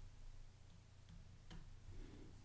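Near silence: faint room tone with a low steady hum and a few soft, faint clicks in the second half.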